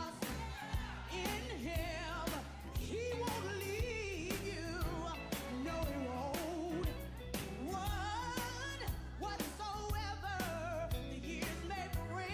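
Gospel music: a voice singing with strong vibrato over a steady bass line and a regular drum beat.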